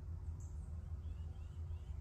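Outdoor background: a steady low rumble with a few faint, short, high bird chirps, the clearest about half a second in.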